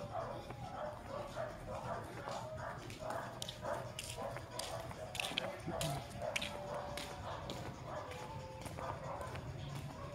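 A dog barking over and over, faintly, about two to three barks a second.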